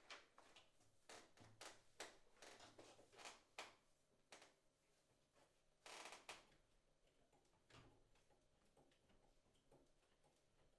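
Near silence: quiet room tone with scattered faint rustles and soft knocks as sheet music is handled and a pianist settles at the piano bench, with a slightly longer rustle about six seconds in.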